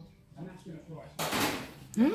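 Chili hitting hot olive oil in a pan: a short, loud sizzle about a second in, lasting under a second.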